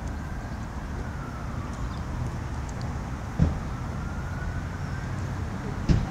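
Steady low rumble of distant road traffic, with a faint siren slowly falling and then rising in pitch. Two dull knocks, one a little past halfway and one at the very end.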